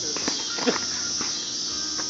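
Boxing gloves smacking during sparring: two quick hits about half a second in, the second the loudest, then a fainter one just past a second, over a steady high chirring of insects.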